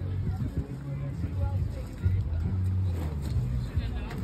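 Wind buffeting the phone's microphone in gusts, a low uneven rumble, with distant voices underneath.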